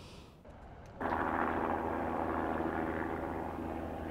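A steady mechanical drone with a hum, cutting in abruptly about a second in and easing off slightly toward the end.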